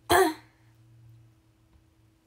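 A young woman's single short throat-clearing cough, about a quarter of a second long, at the very start.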